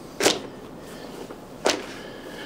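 Two brief soft slaps, about a second and a half apart, as strips of cut leather fringe are dropped onto a leather piece on the worktable.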